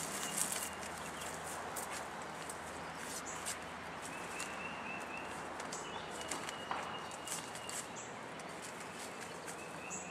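Quiet outdoor ambience with faint bird calls: a few short, high chirping trills over a steady hiss, with scattered light clicks and rustles.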